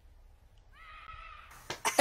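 A child's faint, distant high-pitched shout while sledging in the snow, about a second in: it falls in pitch, holds briefly, and lasts about half a second. A short rush of hiss follows near the end.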